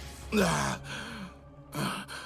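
A man's voice making two short wordless vocal sounds. The first is about half a second long and falls in pitch; the second, near the end, is briefer. A low steady hum of background music runs underneath.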